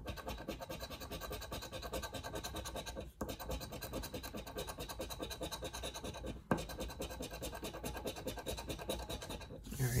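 A large coin scraping the coating off a paper scratch-off lottery ticket in rapid back-and-forth strokes, with brief pauses about three and six and a half seconds in.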